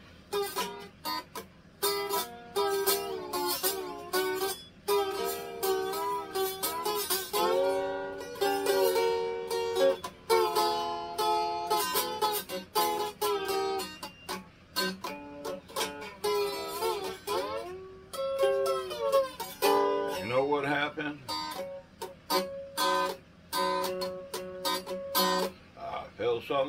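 A small ukulele being strummed repeatedly, somewhat unevenly as the player is out of practice, with a man's voice singing along in places without clear words.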